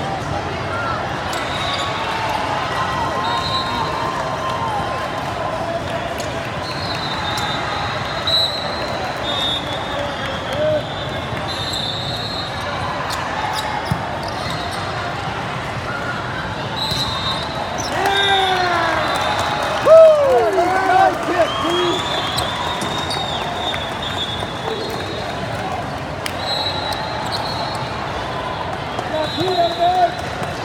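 Indoor volleyball in a large, echoing hall: steady chatter from spectators and neighbouring courts, athletic shoes squeaking on the court floor, and the ball being struck. Players shout during a rally about two-thirds of the way through, the loudest moment.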